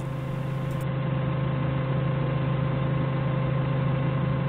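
Forklift engine idling steadily while the forklift stands still.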